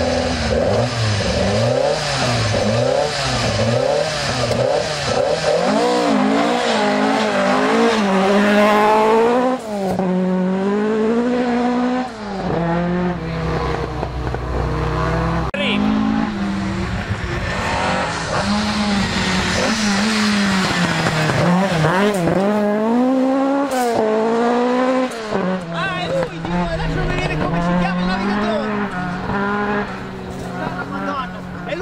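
Ford Escort Mk1 rally car's engine revving hard, its pitch repeatedly climbing and dropping with each gear change and lift as it is driven on a gravel stage.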